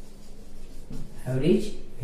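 Marker pen writing on a whiteboard, with a man's voice speaking over it in the second half.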